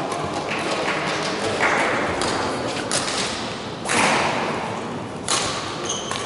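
Badminton rackets striking a shuttlecock in a rally: a run of sharp cracks about a second apart, each ringing briefly in the hall. The loudest hits come about four and five seconds in.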